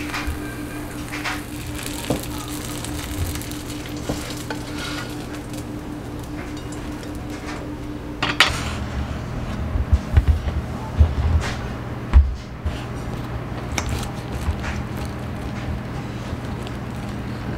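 Folded egg-and-cheese tortilla sizzling in a nonstick frying pan over a steady hum. About eight seconds in the sizzle stops and gives way to scattered dull thumps and small clicks.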